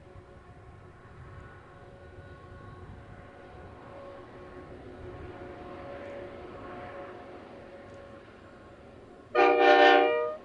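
A GE C44ACi diesel-electric freight locomotive, its 16-cylinder GE 7FDL engine running with a steady drone as it hauls the train. Near the end the locomotive's air horn gives one loud blast of several notes sounded together, lasting about a second.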